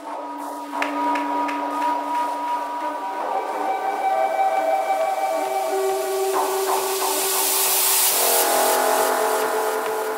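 Techno DJ mix in a breakdown: the bass and kick are filtered out, leaving held synth chords that shift every couple of seconds. A rising noise sweep swells in the second half.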